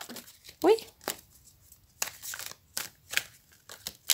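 A deck of tarot cards being shuffled by hand: several short papery rustles and snaps of the cards sliding against each other.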